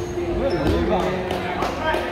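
Basketball bouncing on a hardwood gym floor during a youth game, with voices of players and spectators calling out from about half a second in, echoing in the hall. A steady hum runs underneath.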